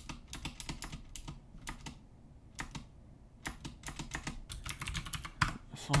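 Typing on a computer keyboard: a run of separate key clicks. There is a pause of about a second around the middle, then a quicker run of keystrokes.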